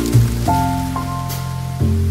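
Background music of sustained chords, with a new chord about every half second, over a steady hiss like rain.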